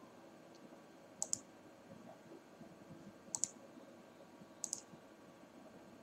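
A computer mouse button clicked three times, each a sharp press-and-release pair, over faint room noise.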